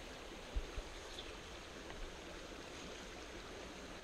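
Small, shallow creek running over a rocky riffle: a steady, soft rush of water.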